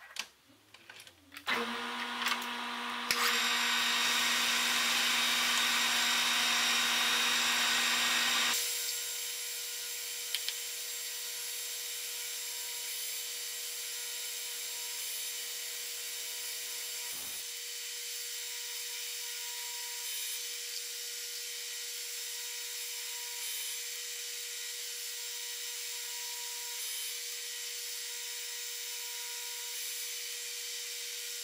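Metal lathe running while single-point cutting an external thread: a steady machine whine with a hum. It starts about a second and a half in, runs louder for several seconds, then settles to a quieter steady level, with a brief knock about halfway.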